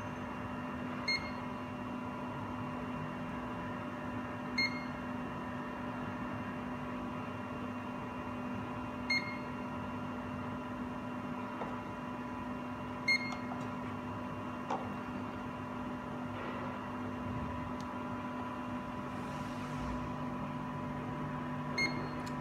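Zeiss Contura coordinate measuring machine sending out a short beep each time its probe touches the part and takes a point, five beeps a few seconds apart, over a steady machine hum.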